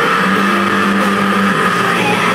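Loud live rock band heard from the crowd: distorted electric guitars hold a sustained chord, a steady drone that shifts about one and a half seconds in.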